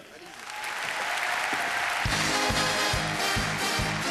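A large studio audience applauding, swelling over the first second. About halfway through, music with a steady beat starts up over the continuing applause.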